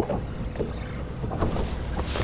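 Steady wind buffeting the microphone and water noise around a bass boat on open water, a low even rumble with no distinct event.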